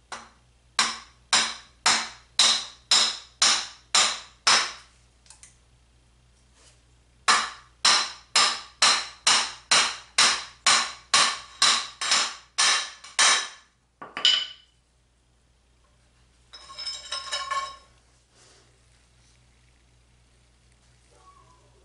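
Brass-headed hammer striking a steel punch to drive the old bearing off a motorcycle's steering stem: two runs of sharp, even blows about two a second, the first about eight strikes and the second about a dozen after a short pause. A single ringing clink follows, then a brief scrape near the end.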